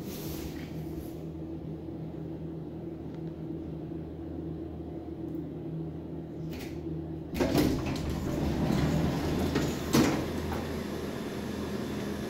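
A 1979 US Elevator hydraulic service elevator running with a steady low hum. About seven seconds in, its car doors slide open with a rumble that ends in a knock about ten seconds in.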